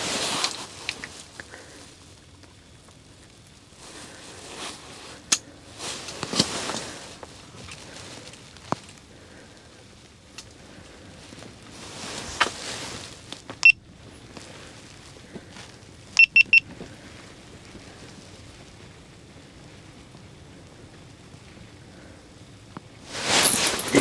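Quiet room tone with soft clothing rustles and a few single clicks, then, about two-thirds of the way in, a quick run of four short high-pitched electronic beeps, with one lone beep shortly before.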